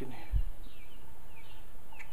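A bird calling in the background: several short falling chirps. A brief low thump of wind hits the microphone about a third of a second in.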